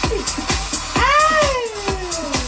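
Dance music with a steady kick-drum beat, and about a second in a single long cat meow that rises and then slowly falls in pitch.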